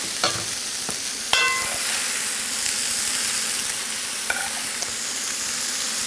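Steady sizzle from a frying pan of pasta, prawns and cherry tomatoes heating in olive oil, with the food being stirred and spooned out. A ringing clink is heard about a second in, and a fainter one later.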